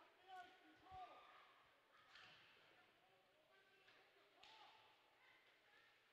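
Near silence: faint ice-rink sound, with distant voices calling now and then and a few faint knocks.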